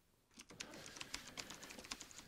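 Dead silence, then from about half a second in, faint irregular clicks and ticks.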